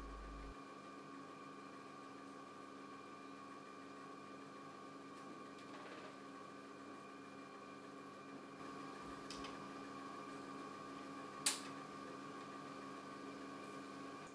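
Steady hum and whine of a running JEOL JSM-T200 scanning electron microscope, its vacuum pumps and electronics on, with faint clicks from its control knobs and a single sharp switch click a couple of seconds before the end.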